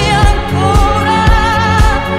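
Remixed Italian pop song: a woman's voice holds a long, wavering note with vibrato over a steady drum beat and bass.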